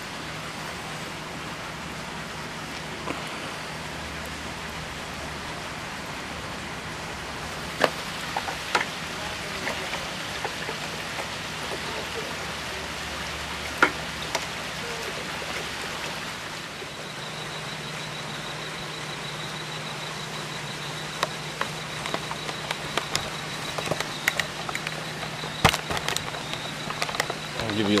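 Aquarium air pump humming steadily while its air stones bubble in a bucket of water and worm castings, aerating the compost tea, with a few sharp knocks and clicks of handling.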